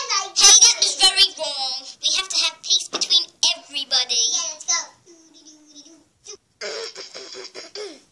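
A young child singing and vocalizing in a high, wavering voice in short phrases, with a quieter stretch about five seconds in before the voice picks up again.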